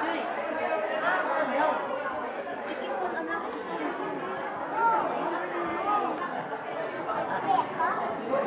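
Many people talking at once: steady, overlapping party chatter in a large hall, no single voice clear.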